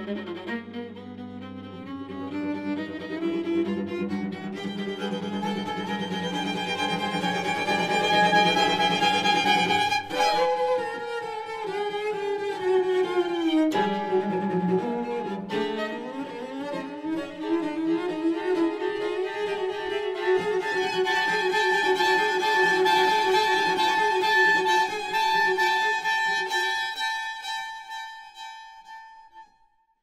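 Bowed string quartet music from a classical clarinet quintet performance. Sustained chords slide upward in pitch over several seconds, then slide back down, then settle on a long high held note. The sound dies away to silence just before the end.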